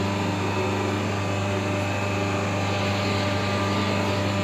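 Steady low hum of a hydraulic paper plate machine's electric motor and hydraulic pump running.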